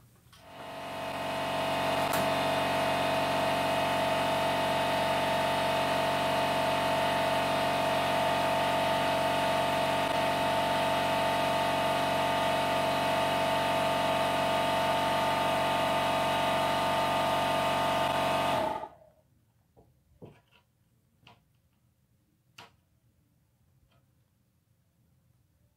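A motor running steadily with a whine, spinning up over about the first second and cutting off suddenly near the end, followed by a few faint clicks.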